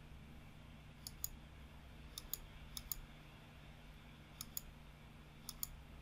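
Faint computer mouse clicks: about five quick pairs, each a button press and release, spaced out as objects are picked on screen, over a faint steady low hum.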